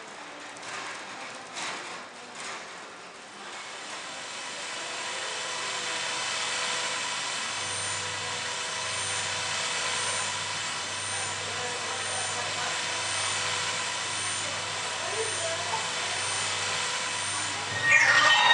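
Projection-mapping show soundtrack during a countdown: a swelling rush of noise builds over several seconds. From about halfway through, a low pulse with a high tick sounds about once a second, roughly ten times. Loud music bursts in at the very end.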